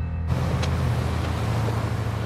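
A car travelling on a wet highway: a steady low engine hum under the hiss of tyres and spray on rain-soaked tarmac. It starts abruptly a moment in, cutting off soft music.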